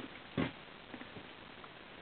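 A single short nasal snort from a person, about half a second in, followed by a couple of faint small ticks over a steady low background hiss.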